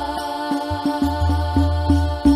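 Al-banjari sholawat: a singer holds one long note over rebana frame drums beating a quick, steady rhythm, with deep bass-drum thuds under many of the strokes.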